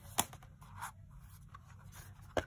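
Clear plastic cutting plates, with a metal die and cardstock between them, being handled by hand as the cutting sandwich is put together for a die-cutting press. There is one sharp plastic click about a quarter second in, then lighter ticks and scraping.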